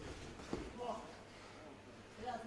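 Faint background voices from the people around the cage, with a soft knock about half a second in.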